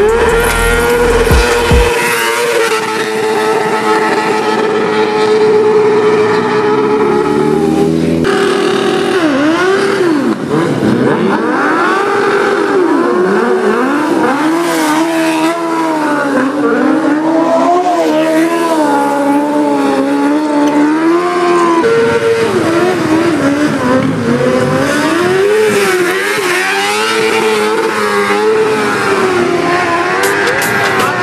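Car engine held at high revs, with tyres squealing during drifting. The pitch wavers and glides up and down, with a few abrupt changes along the way.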